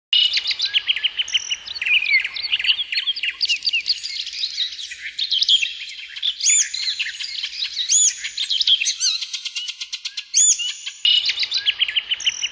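A chorus of several birds chirping and whistling densely, with a fast trill about two-thirds of the way through. It starts abruptly.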